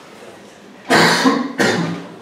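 A man coughing twice in quick succession, loud and harsh, about a second in.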